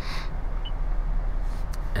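Steady low hum and rush of a pickup truck's cabin with the engine running at idle, with a couple of faint clicks near the end.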